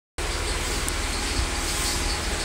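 Steady low rumble with a hiss over it, starting a moment in, with no bass test tone playing yet.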